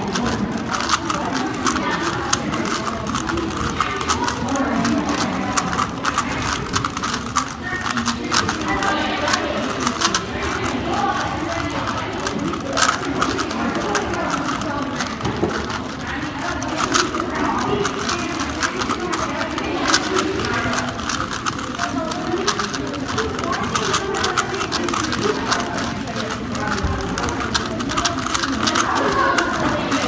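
Several 3x3 Rubik's cubes being turned fast at once: a dense, uneven run of plastic clicks and clacks, over a murmur of voices.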